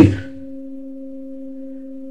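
A steady, pure low tone with a fainter note an octave above it, held unchanged for about two seconds.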